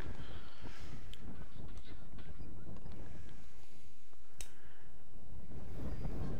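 Steady low rumble of wind on the microphone over faint outdoor stadium ambience, with one sharp click about four seconds in.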